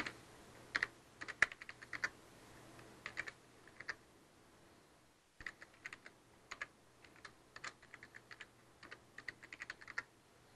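Computer keyboard typing in quick bursts of keystrokes, pausing for about a second and a half near the middle, then going on more densely.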